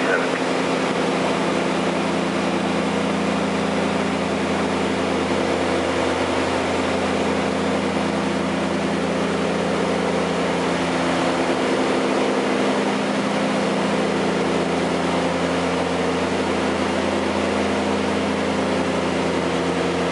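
Beechcraft Queen Air's twin piston engines and propellers running steadily in descent, heard inside the cockpit as an even drone with several steady low tones.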